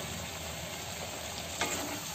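Chicken karahi frying in oil in a metal kadai, a steady sizzle, with a wooden spatula stirring through it and one short scrape against the pan about one and a half seconds in.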